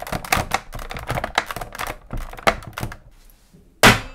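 The plastic casing of a Novation XioSynth 25 keyboard synth creaking and crackling in a quick run of clicks as it is twisted and flexed by hand, showing how flimsy the build is. Near the end comes one loud thump as a hand comes down on the keys.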